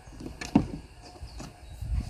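Handling of a plastic piglet nursing bottle and its rubber teat: one sharp plastic knock about half a second in and a fainter one a second later, over a low rumble.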